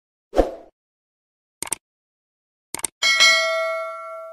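Subscribe-button animation sound effect: a short soft pop, then two quick double clicks like a mouse clicking, then a bright bell ding with several tones that rings out for over a second.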